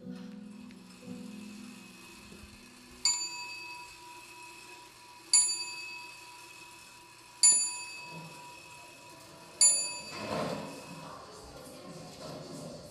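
A low sustained chord fades away, then a small bell is struck four times, about two seconds apart, each strike ringing out and slowly dying away.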